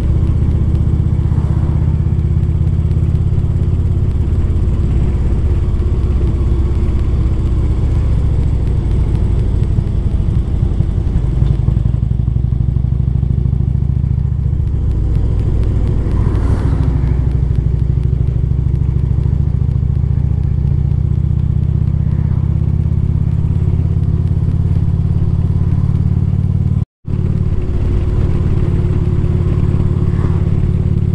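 A steady low engine drone that holds an even pitch, with a brief dropout about three seconds before the end.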